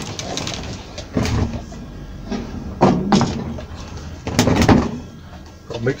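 Clunks and knocks of things being handled on a workbench: a metal paint tin and a plastic mixing cup being moved and set down, with three main knocks at about one, three and four and a half seconds in.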